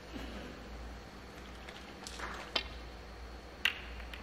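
Two sharp clicks about a second apart over a faint steady low hum.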